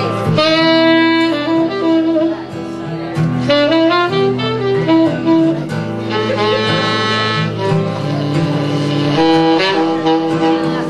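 Saxophone playing a melody of long held notes over a strummed steel-string acoustic guitar.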